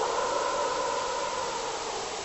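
Television static hiss: a steady, even rush of noise that eases off slightly.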